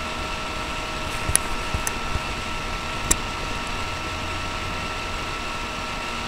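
Steady background hum with a thin high whine through it, broken by a few small sharp clicks, the sharpest about three seconds in.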